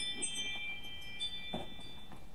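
Doorbell chime ringing: several high, bell-like tones that hang on and slowly fade, with a fresh tone joining about a second in.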